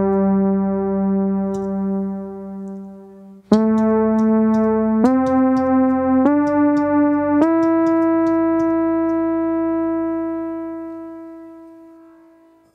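Teenage Engineering OP-1 synthesizer playing single sustained notes while texture sounds are being tried. One held note gives way, after a short break, to four notes stepping upward in pitch, and the last one is held and slowly fades out.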